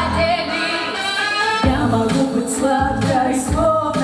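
A female vocal group singing in harmony into stage microphones, several voices at once, with a low beat underneath.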